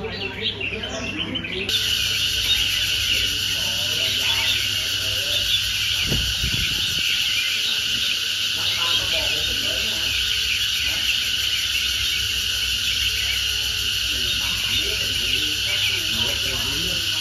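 Cicadas calling in a loud, dense, steady chorus that sets in suddenly about two seconds in.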